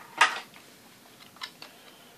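A sharp click of hard objects handled on a workbench about a quarter second in, then a few lighter clicks and taps, as an opened plastic radio-controller case and a soldering iron are handled.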